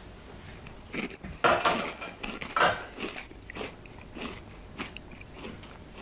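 A person eating a thick smoothie from a spoon: a few short scraping and slurping bursts, spoon against glass among them, starting about a second in.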